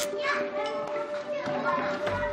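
Young children chattering and playing, several small voices overlapping.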